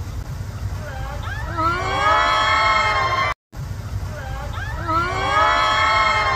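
A woman's voice sliding up and down in pitch through a short vocal phrase, over a steady low rumble. The same phrase is heard twice, with a brief cut to silence between.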